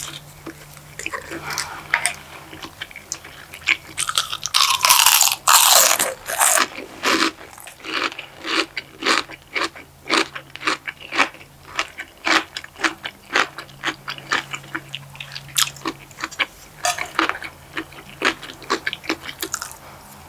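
A person eating close to the microphone. There is a loud crunching bite about five seconds in, then steady chewing with sharp, wet mouth clicks a few times a second. A faint steady low hum runs underneath.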